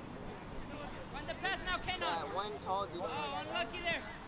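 Indistinct voices of several people calling out across a soccer field, overlapping, starting about a second in.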